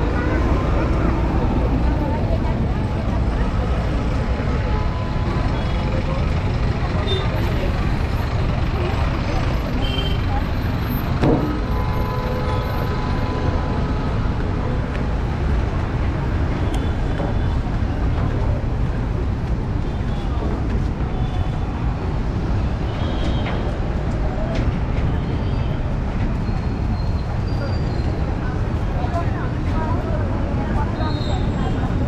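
Busy city street ambience: steady road traffic from buses and cars with background voices of passers-by, and one brief louder sound about eleven seconds in.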